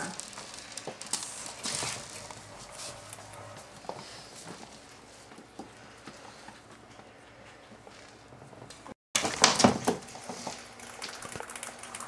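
Pet rats moving about on a wooden floor, with faint scratches and clicks. About nine seconds in comes a brief loud burst of rapid clicking and scuffling, the rats' chattering, a sign of high stress during the introduction.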